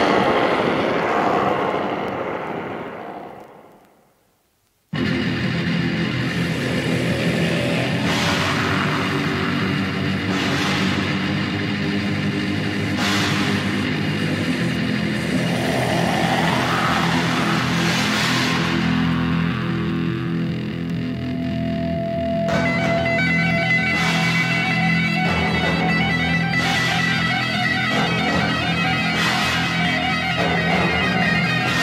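A loud sound fades out over the first few seconds, then after about a second of silence a heavy metal track begins with distorted electric guitar riffing over bass and drums, in the raw early-1980s thrash/black metal style.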